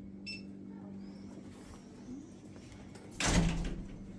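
Shop interior with a steady low hum, a single short high electronic beep about a third of a second in, and a sudden loud noise lasting under a second near the end.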